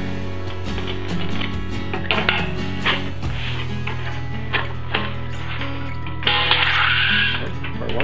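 Background music plays throughout, over several sharp clicks of tin snips cutting a curve in a piece of sheet-metal vent pipe. About six seconds in comes a longer, louder cut.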